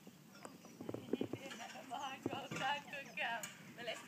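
Ponies' hooves knocking in irregular steps in the first half, then a voice calling out across the arena in the second half.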